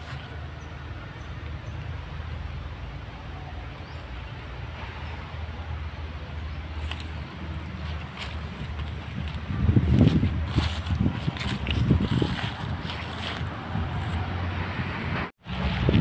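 Wind buffeting a handheld camera's microphone: a steady low rumble that swells into stronger, uneven gusts in the second half, then drops out briefly near the end.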